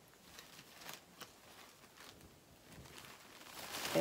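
Faint rustling of a soft knit cardigan being handled and shaken open, with a few light ticks.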